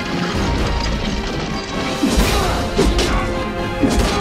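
Dramatic music, with three loud clashing hits in the second half as swords strike shields and armour in a staged medieval sword fight.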